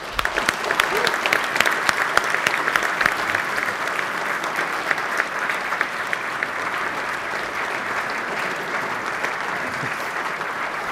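Audience applauding: dense clapping that starts at once, is loudest in the first few seconds, then settles and carries on steadily.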